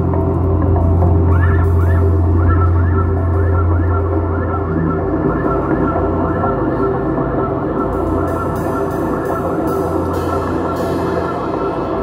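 Ambient music from a live band on stage: a steady low drone under sustained tones, with many quick upward-sliding notes over it.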